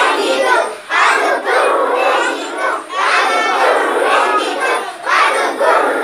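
A group of young children singing a song loudly together in unison, in phrases of about two seconds with short breaks between them.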